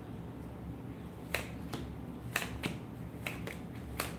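Tarot cards being handled and shuffled: a run of about seven sharp, irregular snaps and slaps, starting about a second in, over a low steady hum.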